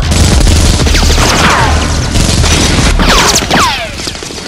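Rapid pistol gunfire sound effects, a dense volley of shots. Falling whistling whines cut through it twice, about a second in and again after three seconds.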